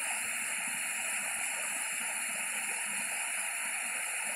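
A small waterfall pouring down a rock face into a pool: a steady rush of falling water.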